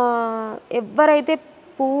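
A steady high-pitched trill of crickets at night runs unbroken behind a woman's speech.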